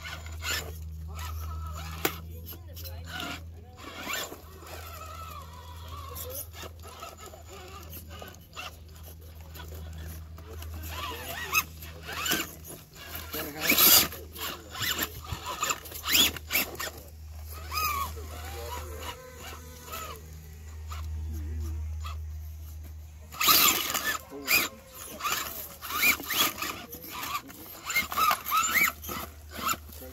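Small electric RC rock crawler driving over rock: motor whine with scattered clicks and knocks from its tyres and chassis against the stone, louder and busier in the last few seconds.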